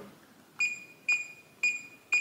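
Reliabilt electronic keypad deadbolt giving a short, high beep each time the 0 key is pressed: three beeps about half a second apart, each with a faint key click. This is the default programming code of four zeros being entered.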